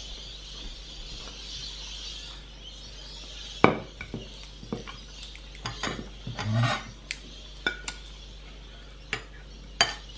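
A spoon and china plates clinking and knocking against each other and the tabletop: a scattering of sharp clinks and clatters from about four seconds in, the first the loudest, a few ringing briefly.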